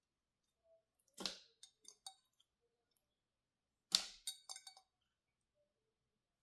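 Cut orange pieces dropped into the plastic feed hopper of a vertical slow juicer: two short clattering drops, about a second in and again about four seconds in, each followed by a few small knocks as the pieces settle.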